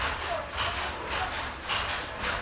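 Rustling of saree fabric as it is unfolded and spread out by hand, with irregular swishes over a steady low background rumble.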